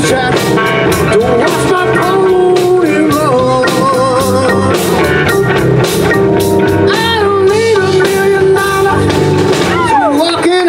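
Live blues band playing: drum kit keeping a steady beat under electric guitars, with a lead line that bends up and down in pitch.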